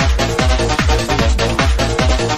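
UK bounce (donk) dance music: a fast, steady kick drum pounding evenly under bass and synth parts.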